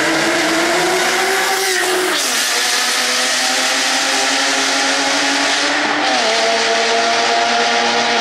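Porsche 996 flat-six breathing through an iPE aftermarket exhaust, accelerating hard with a loud, raspy note. Its pitch climbs, falls sharply at a gear change about two seconds in, climbs again, then drops once more about six seconds in. The sound echoes off the walls of a concrete tunnel.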